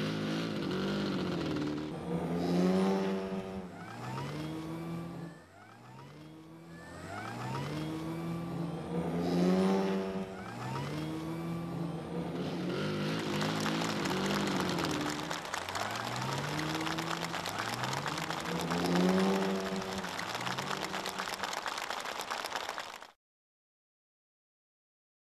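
Model aircraft engines revving up and down again and again as the planes fly aerobatics, with a steady rushing noise through the second half. The sound cuts off suddenly near the end.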